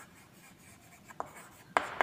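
Chalk writing on a chalkboard: faint scratching strokes and two sharp taps of the chalk on the board, the louder one near the end.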